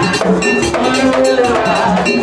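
Vodou ceremony music: a struck metal bell and percussion keep a steady beat under voices singing together.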